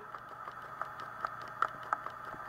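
Quiet room tone with a steady faint whine and a few soft, short clicks in the second half.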